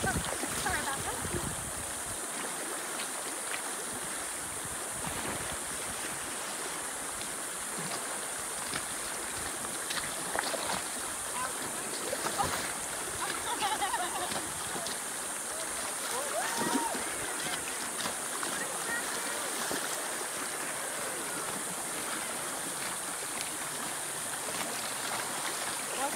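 Shallow river riffle rushing steadily over rocks, with occasional paddle splashes from inflatable kayaks passing close by.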